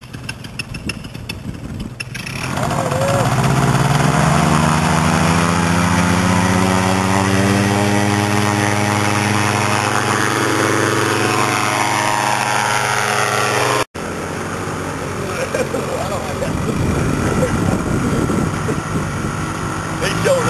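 Paramotor (powered paraglider) engine and propeller throttling up about two seconds in, the pitch climbing and then holding at high power through the takeoff run. There is a sudden break near the two-thirds mark, after which the engine carries on a little quieter.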